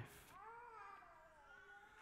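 Near silence in a large room, with a faint high-pitched wavering vocal sound that rises and falls for about a second, starting about half a second in.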